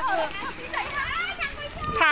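Excited, high-pitched voices of girls and young women talking and calling out over one another.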